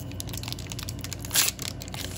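Foil booster pack wrapper crinkling as it is handled, with many small crackles and a louder crinkle about one and a half seconds in.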